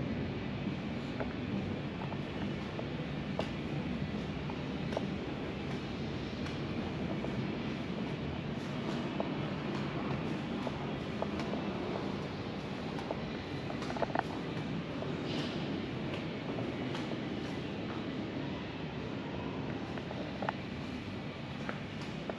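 Steady low rumble of indoor room noise, with a few faint short clicks scattered through and a slightly sharper one about two-thirds of the way in.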